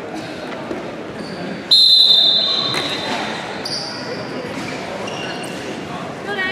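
Referee's whistle: a sudden, loud, shrill blast about two seconds in, held for about two seconds, then a shorter, higher blast, stopping the wrestling bout. Voices from coaches and spectators sound underneath.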